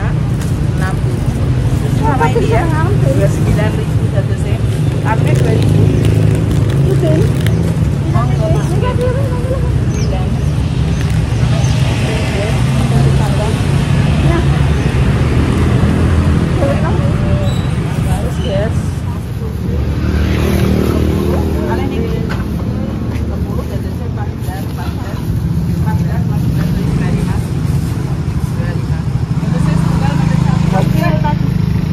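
Roadside market bustle: people talking and bargaining at a street stall over a steady rumble of passing road traffic and motorbikes.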